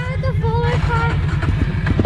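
Small Suzuki ATV engine idling with a steady, rapid low putter.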